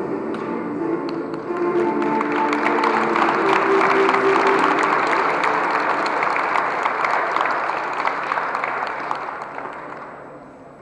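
Audience applauding over music played in the hall; the music fades out about halfway, while the applause swells and then dies away near the end.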